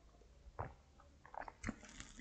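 A man drinking from a mug: a few faint swallows and small mouth sounds, about half a second in and again in a quick cluster near the end.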